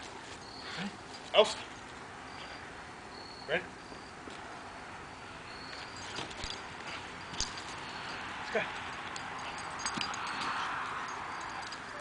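American bulldog at play: paws scuffling over grass and dry leaves, with a few short grunts and a rougher noise that builds in the second half.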